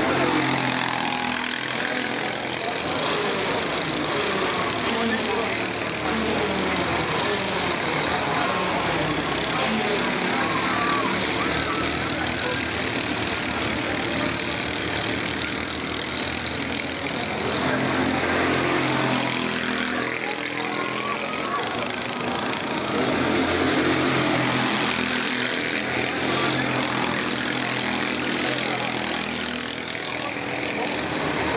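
Racing kart engines at full race pace, several overlapping, their pitch rising and falling as the karts accelerate out of corners and lift off into them.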